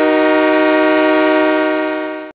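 A train horn sound effect: one loud, steady multi-note chord held without a change in pitch, easing off slightly near the end.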